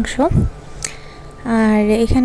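A woman talking, with a short pause in the middle in which a single sharp click is heard.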